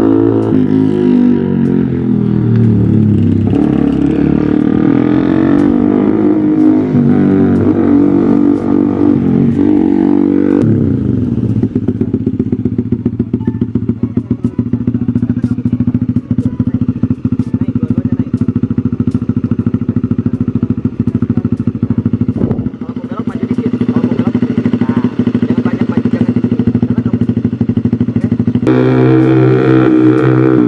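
Small motorcycle engine running. Its pitch rises and falls for about the first third, then it idles with a rapid, even firing pulse, and it revs up again near the end as the bike pulls away.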